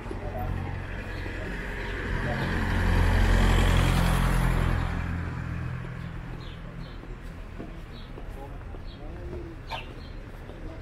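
A motor vehicle passing on the road alongside, its engine rumble and road noise swelling to a peak about three to four seconds in and then fading away. Short bird chirps follow in the second half.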